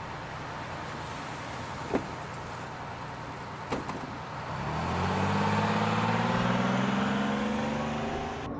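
Steady traffic noise with two sharp clicks, then a city bus's diesel engine pulling away from about halfway through, its pitch rising steadily as it speeds up.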